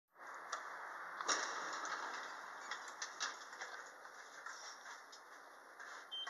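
Elevator call button pressed, then the lift's doors sliding open over a steady hiss, with several sharp clicks and knocks, the loudest a little over a second in.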